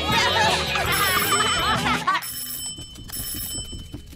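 A group of cartoon children's voices cheering together over music. About two seconds in, they give way to an electric doorbell ringing in two short bursts.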